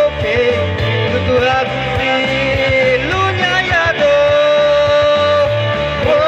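Male vocalist singing a modern Nyishi song into a microphone over an amplified rock-style backing with a repeating bass line, holding a long note in the second half.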